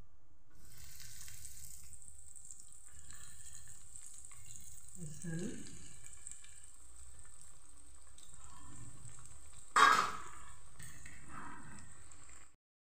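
Bread rolls deep-frying in hot oil in a kadhai: a steady, high sizzle that starts as a roll goes into the oil and runs on. Near the end comes one sharp knock, the loudest sound.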